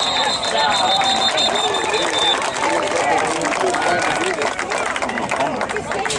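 A football whistle blown in one long, steady blast of about two seconds, stopping the play, over many players and coaches shouting and talking on the field.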